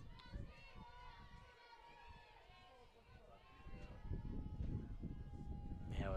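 Faint voices talking and calling out in the background, over a low steady rumble.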